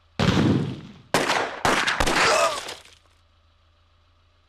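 A car collision in a film soundtrack: a heavy crash about a fifth of a second in, then two more loud crashes with shattering glass that die away by about three seconds in.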